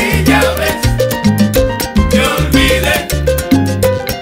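Salsa band playing an instrumental passage: a bass line moving in long notes under a repeating piano and vibraphone figure, with Latin percussion driving the beat.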